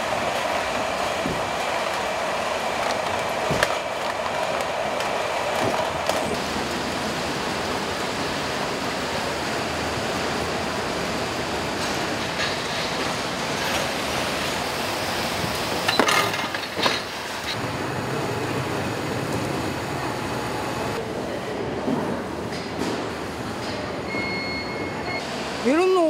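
Steady machinery noise of a fruit packing line, with roller conveyors running and a carton-sealing machine. A few short knocks of boxes or fruit clatter through it.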